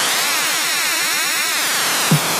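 Electronic music without vocals or drums: a swirling synthesizer sweep, with many tones gliding up and then back down together.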